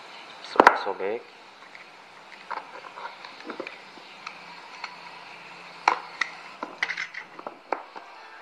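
A knife blade cutting the seal along the edge of a cardboard box, with scattered scrapes and sharp clicks as the box is handled.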